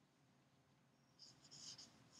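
Faint squeaks of a dry-erase marker writing on a whiteboard: a few short strokes in quick succession in the second half.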